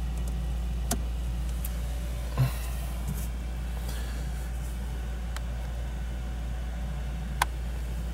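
Car engine idling steadily, heard from inside the cabin, with a few short sharp clicks: one about a second in, one near two and a half seconds and one near the end.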